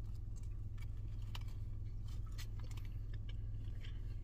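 A person chewing a mouthful of soft taco, with faint scattered wet clicks, over a steady low hum.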